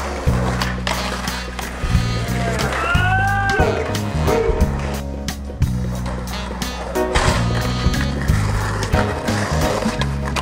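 Skateboard wheels rolling on concrete with sharp clacks of tail pops and landings, over background music with a steady, looping bass line.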